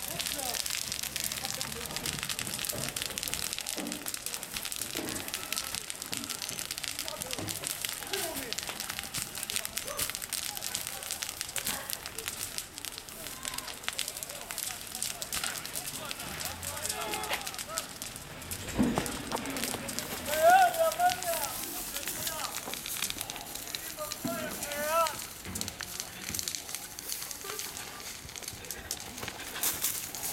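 Dry grass fire crackling steadily. Voices call out a few times in the second half.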